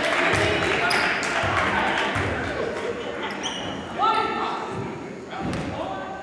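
Spectators' voices and calls echoing in a large gymnasium during a basketball free throw. A basketball bounces on the hardwood court, with a short loud call about four seconds in.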